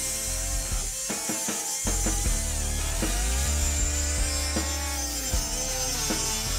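Air-powered cut-off wheel grinding through the steel underside of a car, a steady high-pitched hiss of abrasive cutting, with background music underneath.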